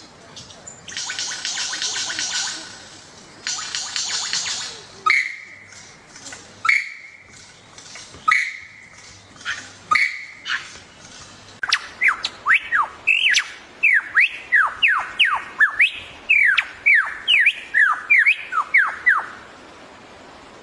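Male superb lyrebird singing in display: two harsh, rattling buzzes, then four sharp clicks each joined to a short whistled note, then a fast run of loud downward-sweeping whistles, about two or three a second.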